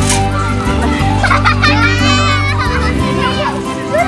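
Children's high-pitched shouts at play, thickest between about one and two and a half seconds in, over background music with steady sustained bass notes.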